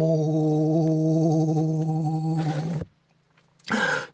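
A man's voice holding one long, steady sung note for nearly three seconds at the end of a Chichewa gospel song phrase. It stops suddenly, and a brief breathy vocal sound follows near the end.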